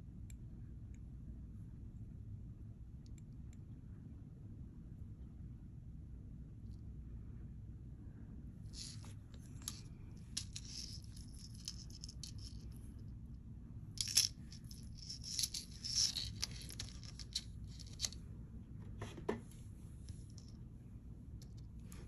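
Faint small metallic clinks and rattles of a costume-jewelry necklace chain and clasp being handled, in scattered bursts through the second half, over a low steady hum.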